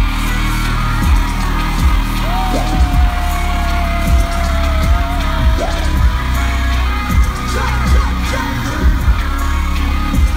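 Live concert music over a large festival sound system: a heavy bass with a strong beat a little faster than once a second, and a long held note a few seconds in that sinks slightly in pitch.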